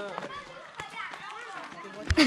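Faint voices of people talking, with a few soft knocks.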